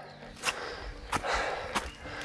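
Footsteps of a hiker walking uphill on a forest track, three steps about two-thirds of a second apart, with a breath between the second and third.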